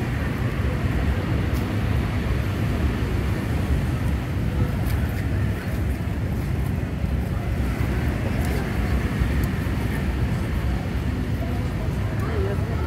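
Outdoor street ambience on a walk: a steady low rumble with an even noise haze over it, and a few faint clicks.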